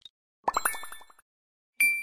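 YOUKU animated-logo sound effect: about half a second in, a quick run of about nine rising plops, then near the end a single bright ding that rings on.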